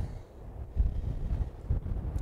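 Wind buffeting the microphone: an uneven low rumble that grows stronger about a second in.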